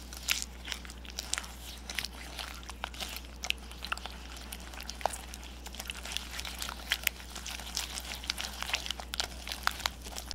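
Wire whisk beating butter, sugar and beaten egg in a glass bowl: quick, irregular clicks of the wires against the glass with wet mixing of the batter.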